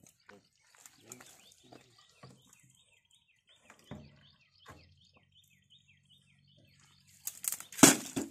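A bird chirps repeatedly in short falling notes, a few per second, over faint voices. Near the end comes a loud splashing rush as liquid is dumped out of a tipped metal drum onto the ground.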